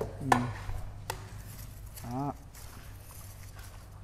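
Two short, sharp clicks about a second apart near the start, over a low steady hum, with two brief spoken interjections.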